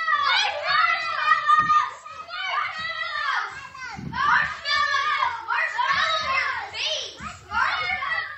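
Young children shouting and shrieking at play, several high-pitched voices overlapping with swooping pitch.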